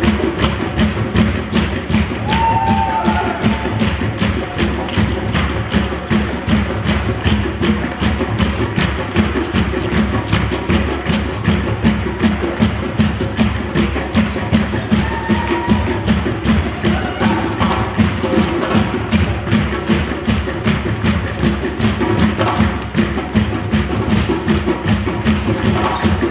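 An African drum ensemble of hand drums playing a fast, steady, driving rhythm of sharp strikes.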